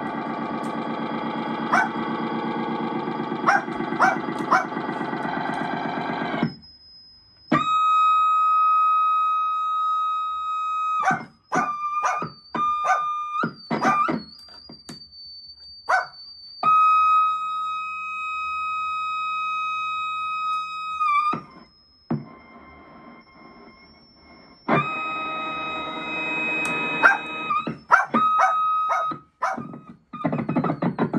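Circuit-bent Casio SK-1 sampling keyboard improvising: a dense, buzzy chord with clicks for about six seconds, then long steady electronic beeps and thin high tones broken by short glitchy stutters, and the buzzy chord comes back about five seconds before the end.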